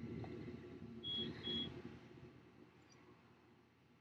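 Two short, identical high beeps about half a second apart from the xTool M1 laser engraver's buzzer, marking the end of a framing pass, over a faint low hum that fades away.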